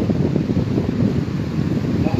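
Wind noise buffeting the microphone: a loud, uneven low rumble with no voice over it.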